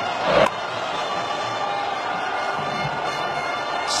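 Stadium crowd noise at a cricket match, with one short, sharp crack of bat on ball about half a second in, a cleanly struck shot.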